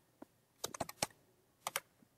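Computer keyboard keys being typed: a single keystroke, then a quick cluster of keystrokes about half a second in, and a couple more near the end.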